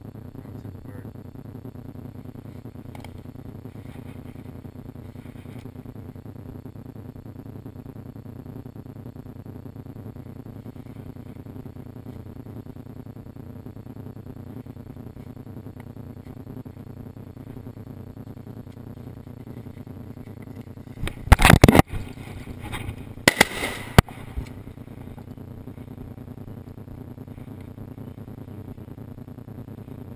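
Two loud, sudden blasts about two seconds apart, each followed by a brief echo, typical of a shotgun fired twice, over a steady low rumble.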